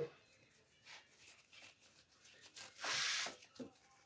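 White paper being torn by hand: a few short faint rips, then one longer, louder tear about three seconds in.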